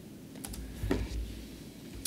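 Two soft clicks of laptop keys being pressed, about half a second apart, over a low rumble.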